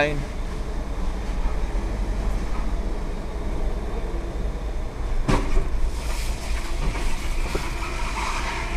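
Car engine and tyres giving a steady low rumble, heard inside the cabin as the car drives slowly through the enclosed wagon of a car-carrying train, with a single sharp knock about five seconds in.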